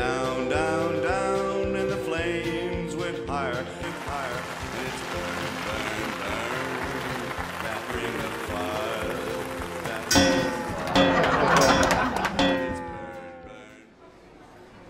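Soundtrack of short animated clips: a country-style song with singing over steady accompaniment for the first few seconds, then a mix of voices and effects. About ten seconds in comes a loud, noisy burst lasting a couple of seconds, followed by falling tones that fade out.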